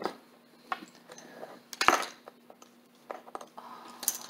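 Leather bridle being handled, its metal buckles and bit rings giving scattered light clinks and taps, with one sharper knock a little before two seconds in.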